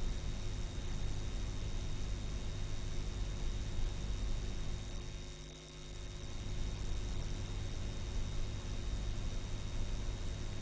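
Steady hiss and low hum from the soundtrack of old black-and-white archival film footage, with a faint high whine and no voice; the noise dips briefly about halfway through.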